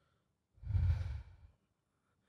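A man's sigh: one breath out lasting about a second, starting about half a second in, blowing on a close microphone.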